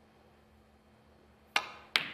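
Snooker cue tip striking the cue ball with a sharp click about one and a half seconds in, followed by a second click just under half a second later.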